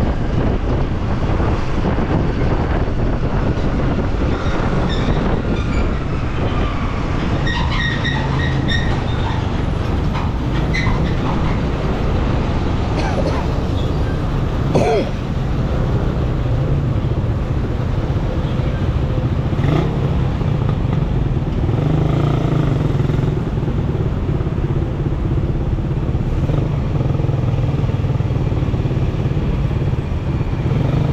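Yamaha motor scooter riding along a city road: steady engine hum with tyre and road noise as it slows from speed into traffic.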